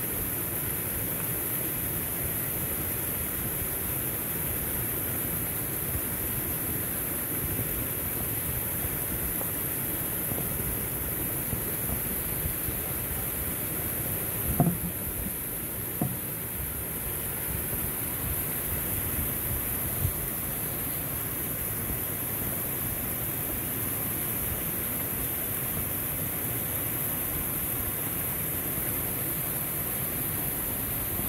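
Steady rush of a mountain stream running over rocks, with a few short knocks near the middle.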